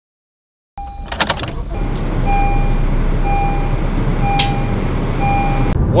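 A Honda car's dashboard warning chime beeping about once a second over a steady low engine hum, with a cluster of clicks about a second in and another single click midway.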